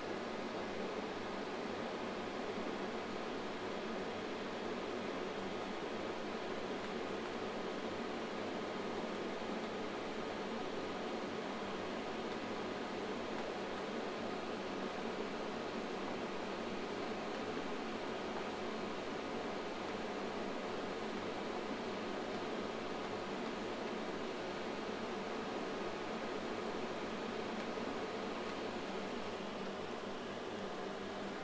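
Steady, even whir and hiss of a running 1981 Quantel DPB-7001 Paintbox's equipment cooling, with a faint steady hum and no change throughout.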